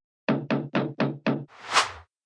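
Six quick knocks on a door, evenly spaced at about five a second. They are followed by a brief rushing noise that swells up and stops near the end.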